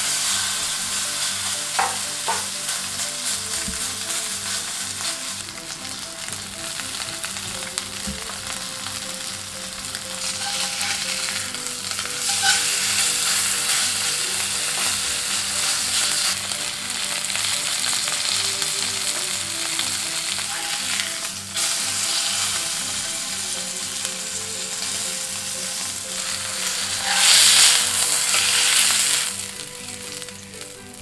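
Steak pieces searing in hot oil in a cast-iron skillet, sizzling steadily, with the sizzle swelling louder twice, in the middle and near the end.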